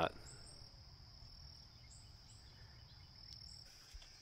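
Faint outdoor ambience: a steady high-pitched insect trill, with a few short high chirps and a soft knock near the end.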